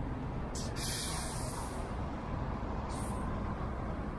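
Steady street-traffic rumble, broken by a sharp hiss of released air from a vehicle's air brakes about half a second in that lasts just over a second, and a shorter hiss about three seconds in.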